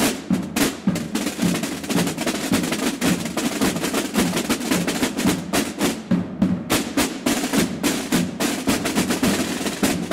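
A group of marching snare drums played together with sticks, beating a steady, fast rhythm of many strokes that runs without a break.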